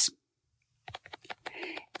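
Computer keyboard keys clicking in a quick run lasting about a second, starting about a second in: repeated keystrokes undoing paint strokes in a drawing program.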